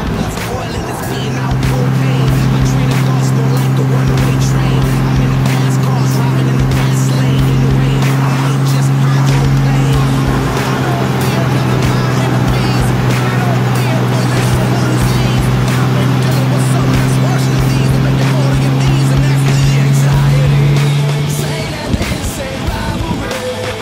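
Toyota X-Runner pickup's 4.0-litre V6 running at steady cruising speed, a flat steady drone that settles in about a second in and fades just before the end, with music playing over it.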